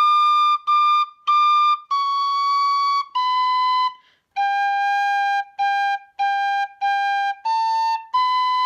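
Tin whistle in D playing a slow, clearly tongued reel phrase: three high D's, then C, B, four repeated G's, then A and B, each note separate and steady in pitch.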